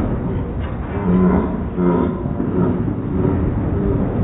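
Bowling alley background noise, voices and clatter, slowed down in slow-motion playback so that it sounds deep and drawn out, with low bending tones about a second and two seconds in.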